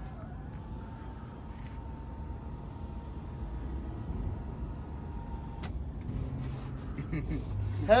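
Electric motor of an aftermarket power sunroof running as the glass panel tilts up and opens. It makes a steady whine that rises slightly as it starts, holds for about five seconds and stops with a click.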